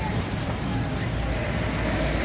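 Outdoor street ambience: a steady low rumble and hiss, like passing traffic, under indistinct voices.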